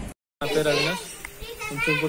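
People's voices speaking, starting about half a second in after a brief dropout to silence at an edit cut.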